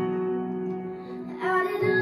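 Soft instrumental accompaniment holding sustained chords; about one and a half seconds in, a teenage girl starts singing solo into a handheld microphone over it.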